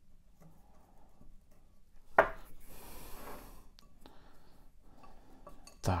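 A thin stick pushing orchid bark pieces in among the roots inside a glass pot: a sharp click on the glass about two seconds in, then a second or so of scraping and rustling, with fainter rustling after.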